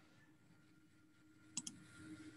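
Near silence: room tone with a faint hum, and two brief, faint clicks about one and a half seconds in.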